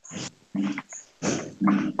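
Four short animal calls in quick succession, heard over a video-call line.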